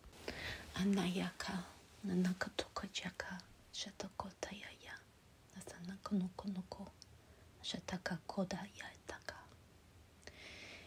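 A woman's soft voice uttering a run of short syllables that make no recognisable words, channelled light language.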